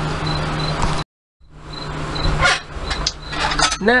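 Steady low electrical hum with hiss, broken by a brief dead gap about a second in. Afterwards a few light clicks and clinks of tools being handled on a workbench, the last just before a voice begins.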